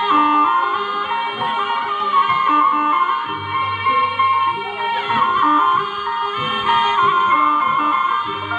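Javanese kuda kepang (ebeg) dance accompaniment music: a wind-instrument melody that bends in pitch, played over steady ensemble notes and recurring low beats.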